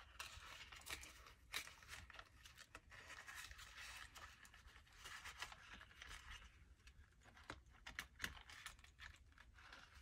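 Faint rustling and crinkling of paper banknotes being handled and slid into a vinyl cash envelope in a binder, with many small clicks and taps throughout.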